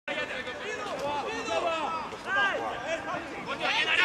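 Several voices of football players and people on the touchline shouting and calling over one another during play; the calls are short, rising and falling in pitch, with no clear words.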